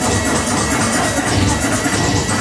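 Club music from a live DJ set, mixed on a DJ controller and playing loud and without a break over the venue's sound system.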